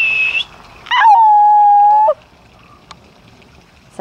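Two loud, steady-pitched squeaks made to catch a puppy's attention: a short high one, then, about a second in, a longer, lower one lasting just over a second.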